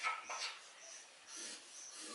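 Marker pen writing on paper: a few short, faint scratchy strokes with a slight squeak as an expression is written and then underlined.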